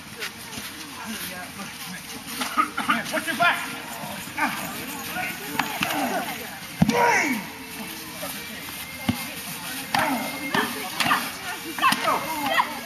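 Several people's voices talking and calling out at once, too indistinct for words. A single sharp knock comes just before the middle, louder than the voices.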